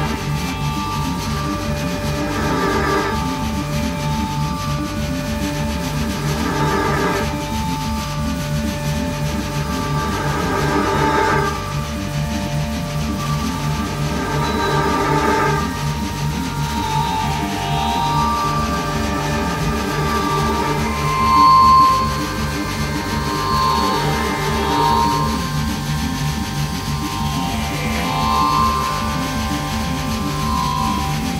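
Live improvised drone music: a fast-pulsing low drone under layered sustained tones. In the first half it swells about every four seconds; later, higher held notes drift in, with one brief louder swell a little past the middle.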